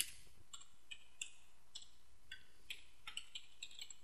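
Computer keyboard being typed on: about a dozen faint, separate keystrokes at an uneven pace.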